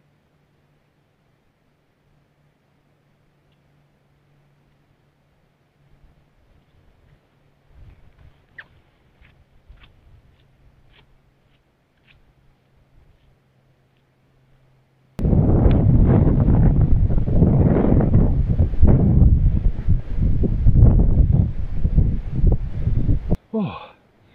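Wind buffeting an action camera's microphone on an exposed, breezy hilltop: very faint for a long stretch with a few soft ticks, then, about two-thirds of the way in, a loud rushing rumble starts suddenly and stops shortly before the end.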